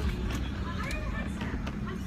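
Car engine idling, heard from inside the cabin as a steady low rumble, with faint voices over it.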